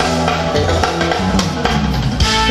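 Live band playing an uptempo pop song, with the drum kit and electric bass guitar to the fore and regular drum strokes driving the beat.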